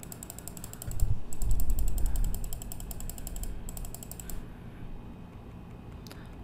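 Computer mouse scroll wheel spun in three quick runs: rapid, evenly spaced ratcheting clicks, with a low rumble of desk handling about a second in.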